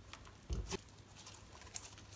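Hands pressing and picking up a large glossy glitter slime, making sticky squishes and small crackling clicks; a heavier squish comes about half a second in and a sharp click near the end.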